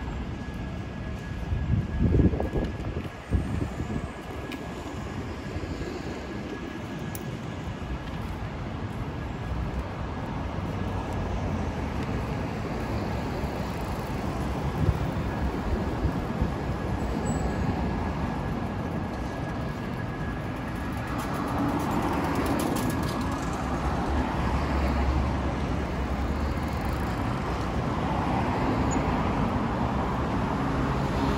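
City street ambience: a steady wash of passing traffic that grows a little louder near the end, with two short low bumps about two and three and a half seconds in.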